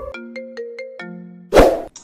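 Comedy sound effects: a quick run of beeping electronic notes stepping in pitch, then a lower held note, then about one and a half seconds in a single loud crash effect for a car smashing into something and cracking its windshield.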